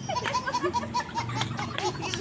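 A woman laughing in a quick run of short, evenly spaced high-pitched bursts, about five a second.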